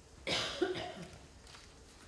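A person coughing once, about a quarter of a second in, a short rasping cough over in under a second.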